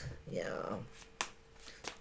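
Tarot cards being handled on a table: a few short clicks and taps as the cards are touched and moved.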